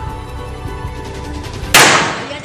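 Background music playing, cut off near the end by a single loud bang of a firecracker going off.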